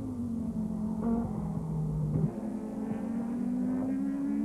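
Racing saloon engine heard through the onboard camera of an Audi quattro racing car, running at a steady high pitch. About two seconds in, the sound cuts to race cars at the trackside, where one engine note rises steadily as the car accelerates down the straight.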